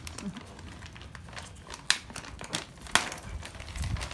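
Plastic rice bag rustling and crinkling as it is handled, with two sharp clicks, about two and three seconds in.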